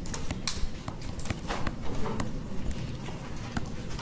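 Irregular clicks and taps of a stylus on a tablet screen as a short heading is handwritten and underlined, over low background room noise.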